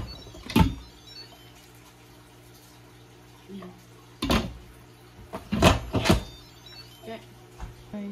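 Lid of an Instant Pot IP-LUX electric pressure cooker clunking against the pot: one sharp knock about half a second in, then three knocks between about four and six seconds in as the lid is set down and twisted shut.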